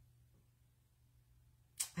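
Near silence: quiet room tone with a faint steady low hum, broken near the end by a short sharp click just before a woman starts speaking.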